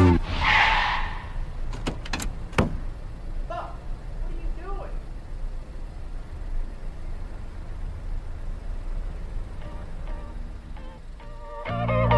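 The song's music drops out for a quiet interlude: a brief hiss, then a low steady rumble with a few clicks and faint voices. The music comes back in near the end.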